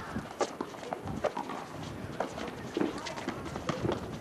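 Basketball players running on an outdoor concrete court: a string of quick, irregular footfalls and sneaker taps, with voices calling in the background.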